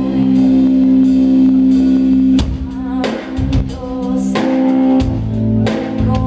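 Live band of female vocal, bass guitar, keyboards and drum kit playing a song. A long low note is held through the first half, then the drums come in with a fill of hits and cymbal crashes.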